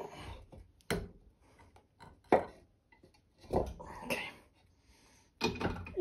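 A heavy metal vertical milling head being handled against a wooden block and the mill's mounting flange: a few sharp knocks and clunks, the loudest about two seconds in, with scraping and shuffling between.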